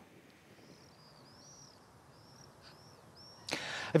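Faint outdoor ambience with a series of thin, high, arching bird chirps, followed about three and a half seconds in by a short, much louder rush of noise just before speech begins.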